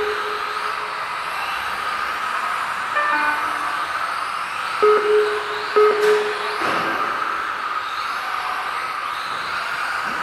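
Tamiya TT-02 electric RC cars racing round an indoor track, their motors and gears whining steadily. A quick descending run of electronic tones comes about three seconds in, then two short beeps a second apart around the middle.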